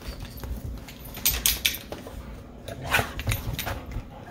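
Dogs pawing and nosing at a cat on a sofa: short scratchy rustles and clicks, bunched about a second in and again around three seconds in.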